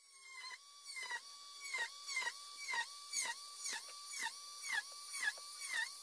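Small handheld rotary tool with a fine drill bit spinning up and drilling a row of small holes in thin wood. Its motor whine dips in pitch about twice a second as the bit bites in and recovers as it lifts out.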